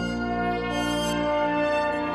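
Trumpet sound sampled by the mutantrumpet and played back electronically by a computer: layered, sustained brass tones held steady, with the lowest tones fading out about three quarters of the way through.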